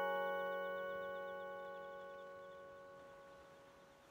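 Music box's final chord ringing out, several notes held together and fading away evenly until almost nothing is left.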